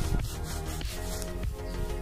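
Gloved fingers rubbing soil off a small dug-up metal disc, a rough scraping rub, over background music.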